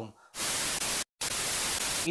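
Steady hiss of static, like white noise, spread evenly from low to very high pitch; it starts after a moment of dead silence and breaks off once about a second in with a short gap of silence before carrying on.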